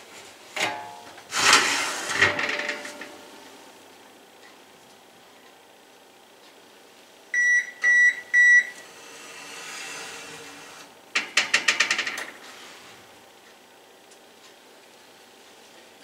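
Three short, high electronic beeps about halfway through, with clattering from a wire oven rack and foil pie pans before and after, as pies are set into an open oven. The second clatter is a quick run of rattling clicks.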